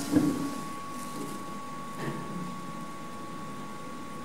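KONE EcoDisc lift machinery running in the shaft: a steady high-pitched whine over a low hum. There is a sharp click just after the start.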